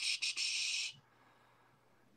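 A drawn-out hiss of breath through the teeth, a person mulling over a question, that cuts off about a second in; then silence.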